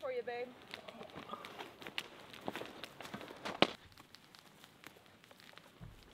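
Light scattered knocks and rustles of wood chunks and bark being picked up and dropped on sawdust-covered ground, the sharpest knock a little past halfway.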